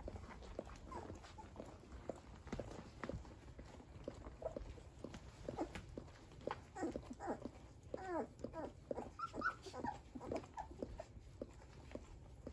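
Newborn standard poodle puppies squeaking and whimpering while they jostle to nurse. The squeaks are short and bend up and down in pitch, bunched mostly in the second half, over faint soft clicks.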